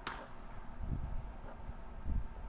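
Wind rumbling on the microphone in uneven gusts, with a short whistle that falls in pitch right at the start.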